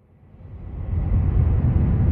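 A deep rumbling whoosh that swells up from near silence over about the first second, then holds steady: a sound effect for an animated title logo.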